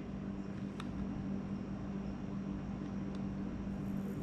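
A steady low hum over quiet room noise, with two faint clicks, about a second in and about three seconds in, from fingers handling the plastic GoPro mount and thumb screw on a scuba mask.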